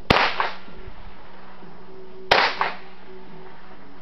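Two rifle shots from a scoped rifle, about two seconds apart, each sharp crack followed a fraction of a second later by a fainter second crack.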